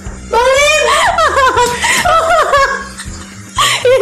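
A high-pitched human voice laughing in wavering bursts for about two and a half seconds, starting shortly in and breaking out again near the end, over steady background music.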